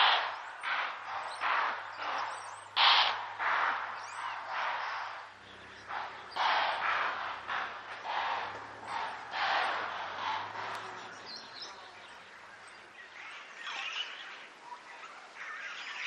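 Footsteps crunching and rustling through dry leaf litter and grass, about one or two a second, fading out after about ten seconds.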